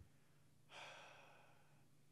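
A person sighing into a microphone: one breathy exhale beginning less than a second in and fading away over about a second, otherwise near silence.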